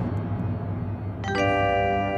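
Dramatic background score: a low drone, then about a second and a quarter in a bell-like chord is struck and rings on.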